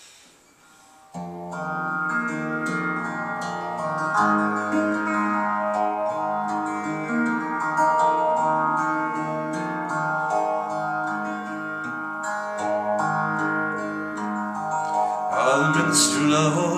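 Solid-body electric guitar, clean tone, playing a picked song intro of ringing chords and notes, starting about a second in. A man's singing voice comes in near the end.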